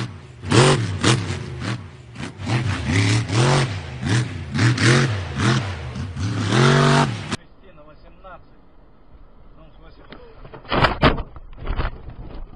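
A rock-bouncer off-road buggy's engine revving hard in repeated rising-and-falling blips as it jumps and drives over dirt, cut off suddenly about seven seconds in. After that, quieter vehicle noise with a brief loud burst of impact-like noise near the end.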